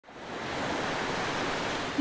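Ocean surf breaking on rocks: a steady rush of water noise that fades in over the first half second.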